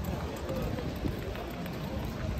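A horse's hooves and a groom's feet stepping softly on wood-chip footing at a walk, with people talking in the background.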